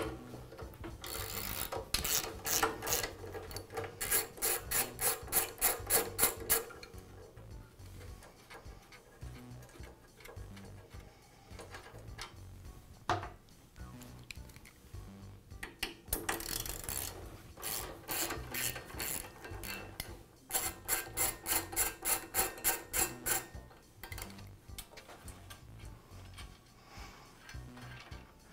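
Ratchet wrench clicking in quick, even strokes as screws are backed out, in two runs of several seconds each, the second beginning about halfway through, one for each of the two screws that hold the cutter head to the base.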